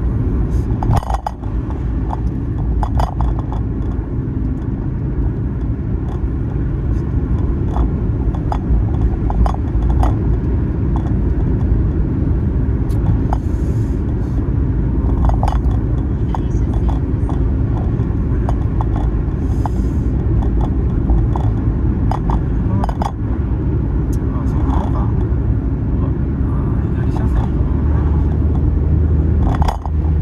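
Steady road and engine rumble heard from inside a moving car, with scattered light clicks and knocks.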